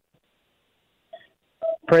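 Two short electronic beeps like telephone keypad tones on a caller's phone line, in an otherwise silent gap.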